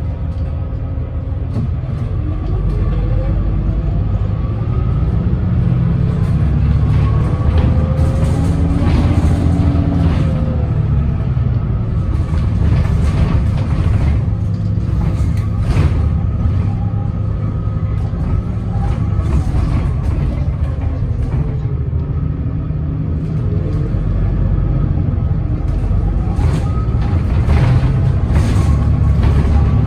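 Cabin sound of a 2010 Gillig Low Floor Hybrid bus under way: a steady low rumble from its Cummins ISB6.7 diesel and Allison hybrid drive, with a whine that rises and falls in pitch several times as the bus speeds up and slows. Occasional brief clatters sound over it.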